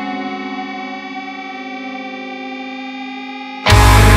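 Progressive deathcore music: a sustained, effects-laden electric guitar chord rings out and slowly fades. Near the end the full band comes in abruptly and loudly with heavy low guitars and drums.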